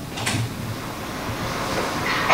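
Low, steady rumbling background noise from a video soundtrack played over room loudspeakers, with a brief hiss about a quarter of a second in.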